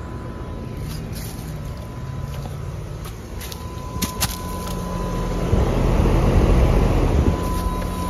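Trane XR13 outdoor AC/heat-pump unit running rough, a steady low hum under a loud, harsh mechanical noise that swells for a couple of seconds past the middle; it sounds like hell.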